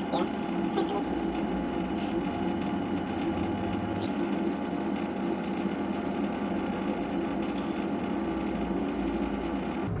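A steady, even droning hum made of several held tones, like a running motor, with faint ticks about two and four seconds in.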